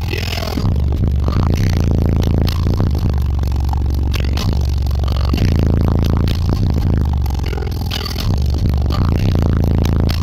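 Loud bass-heavy rap music from the Dodge Ram's car-audio subwoofer system, heard inside the cab, with deep bass notes held steady throughout. Over the bass comes a constant rattling and buzzing of the truck's body and trim.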